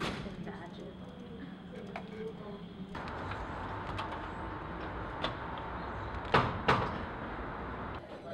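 Keyboard typing under background chatter, then from about three seconds in a glass door being opened, with a steady rush of noise. Near the end come two loud clunks from the door, close together.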